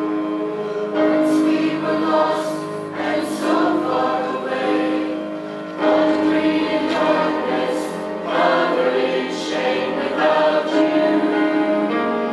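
Mixed church choir singing in full sustained chords over orchestral accompaniment, the phrases swelling anew about a second in and again near the middle.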